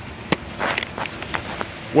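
Footsteps on lawn grass with camera handling noise: a sharp click about a third of a second in, then a few soft scuffs.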